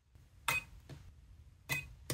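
Pen-type battery spot welder firing twice, a sharp snap about half a second in and another about a second and a quarter later, welding the nickel tab of an iPhone battery management board onto a new battery cell.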